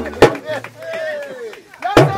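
A break in the drum music: a sharp knock, then a voice, then another sharp knock near the end.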